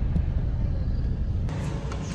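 Low, steady rumble of a car driving slowly, heard from inside the cabin; it breaks off abruptly about one and a half seconds in.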